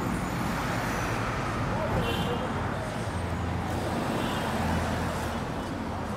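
Roadside street ambience: a steady wash of traffic noise with engine hum from passing vehicles, mixed with indistinct voices of people nearby.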